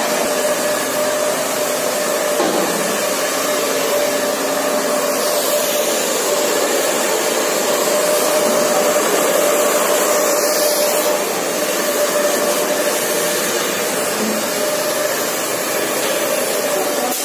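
Handheld hair dryer blowing steadily on a client's short hair, a constant rush of air with a steady motor hum.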